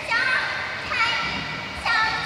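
A female performer's high voice singing lines of dialogue through a microphone, in the drawn-out, held-note delivery of Khmer yike theatre, with a new phrase beginning near the end.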